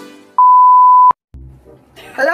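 TV colour-bars test tone: one loud, steady, high-pitched beep lasting under a second, cut off abruptly with a click. It follows the fading tail of music.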